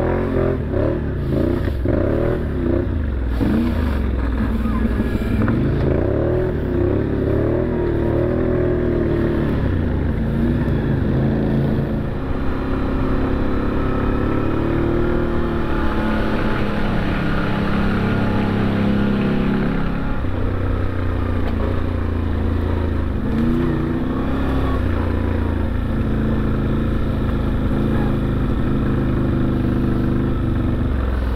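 Off-road side-by-side's engine running while driving on a trail, its pitch rising and falling as the throttle opens and closes.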